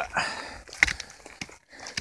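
Rustling handling noise with one sharp click a little under a second in and a fainter click shortly after.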